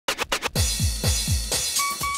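Electronic dance track: a few quick, choppy stutters, then deep kick drums that drop in pitch, about four a second, with a short held synth note near the end.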